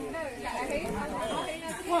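Several people talking at once in low, overlapping chatter.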